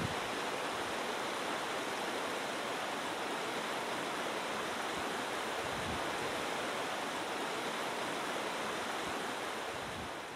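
Shallow mountain stream running over rocks: a steady rush of water.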